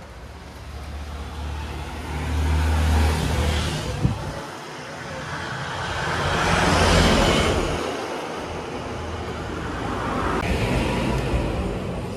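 Road traffic passing close by: a heavy engine rumble about two to three seconds in, then a louder vehicle whose noise swells and fades in the middle, with a smaller pass near the end.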